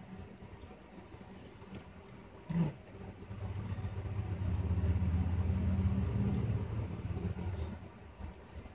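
A single knock about two and a half seconds in, then a low motor hum that swells and fades over about four seconds, like a vehicle passing.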